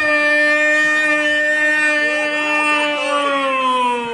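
A man's loud, drawn-out goal shout: one long held note that slides down in pitch near the end, as the breath runs out.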